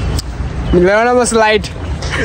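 A man's voice making one drawn-out, wordless exclamation a little under a second long, rising and then falling in pitch, over a steady low rumble.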